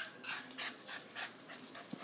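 Small white terrier panting quickly and faintly, about four or five breaths a second.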